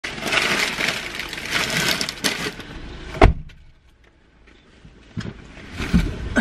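Plastic shopping bags rustling and crackling as they are loaded into a car's back seat, ended by a single heavy thump of a car door shutting about three seconds in. After a short quiet stretch come small knocks and rustles as someone gets into the front seat near the end.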